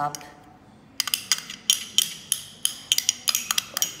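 A small glass dish clinking repeatedly as crumbled cheese is tapped and shaken out of it, sharp ringing clicks several times a second starting about a second in.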